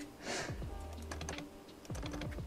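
Light, quick clicks and taps of small plastic model-kit parts handled between the fingers, over soft background music.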